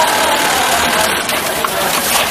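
Steady mechanical din of a garment factory sewing floor, with industrial sewing machines running, and a short click about one and a half seconds in.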